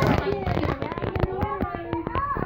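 Voices in a room, without clear words, mixed with a rapid run of sharp clicks and crackles.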